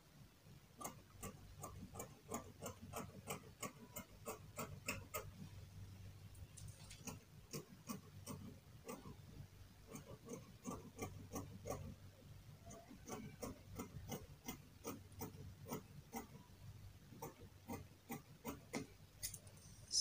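Scissors snipping faintly, cutting out the freshly drafted cap-sleeve pattern, in a steady run of short clicks about three a second.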